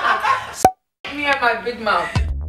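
People talking, broken by a sharp click and a short dead-silent gap under a second in, then talking again.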